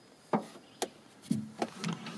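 A few light, irregularly spaced clicks and knocks of handling on the tank's steel frame and steering parts.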